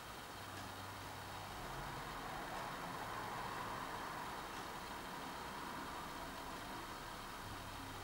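Quiet room tone: a steady low hiss with a few faint ticks.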